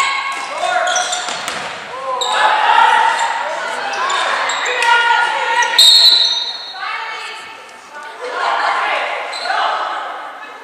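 Echoing gym sounds of a basketball game: voices shouting and a basketball bouncing on the hardwood floor. About six seconds in, a referee's whistle blows briefly to stop play.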